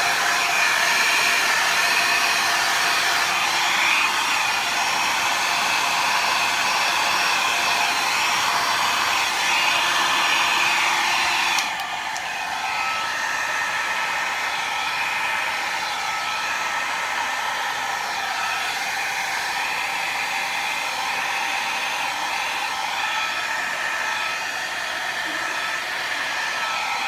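Small hair dryer running steadily. A little under halfway through, its sound steps down slightly in level and stays at that lower level.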